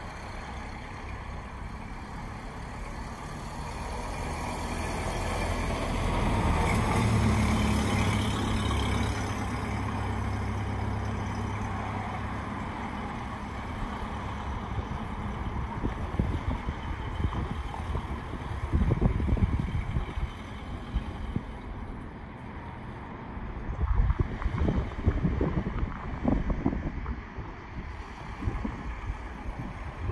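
1929 Ford Model A pickup's four-cylinder engine running as the truck drives off across the lot. It grows louder about six to ten seconds in, then fades with distance. Gusts of wind hit the microphone in the second half.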